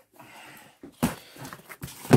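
A cardboard shipping box being picked up and handled: a soft rustling scrape, then a knock about a second in and another near the end as it is moved.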